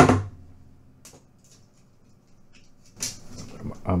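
Pliers and a piece of stiff solid 14-gauge copper wire being handled on a cutting mat. One sharp knock at the start is the loudest sound, then a faint click about a second in and a short clatter about three seconds in.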